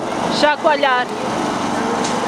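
A man's voice through a microphone and loudspeaker, speaking briefly about half a second in, over a steady background hum of street noise.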